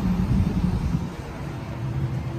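Road traffic rumble, with a vehicle going by, loudest in the first second and then easing.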